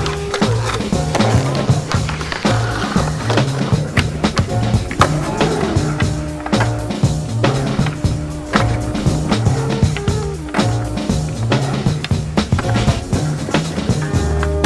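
Skateboard wheels rolling on concrete, with sharp clacks of the board popping and landing, over background music with a repeating bass line.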